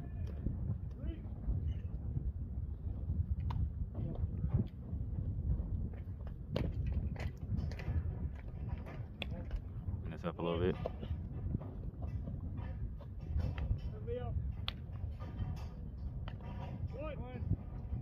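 Wind rumbling on the microphone, with distant shouted calls from players about ten seconds in and twice near the end, and scattered faint clicks.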